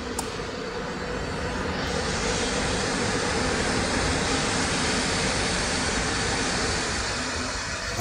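Ventilation fans restarting after the fire alarm panel is reset, releasing the fire shutdown: a steady rush of air with a low hum, which grows fuller about two seconds in and then holds.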